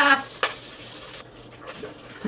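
Butter sizzling in a stockpot: a steady hiss that cuts off abruptly a little over a second in, with a sharp click about half a second in.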